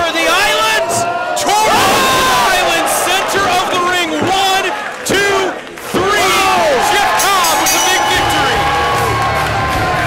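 Wrestling crowd in a small venue shouting and cheering, many voices yelling at once over a pin. About eight seconds in, loud rock music starts up.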